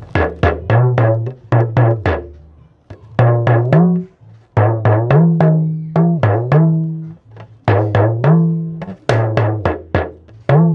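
Small Yoruba hourglass talking drum struck with a curved stick, its pitch raised and lowered by squeezing the tension cords, playing quick phrases of strokes that step and bend between low and higher notes. The drummed phrases copy the speech tones of a Yoruba proverb.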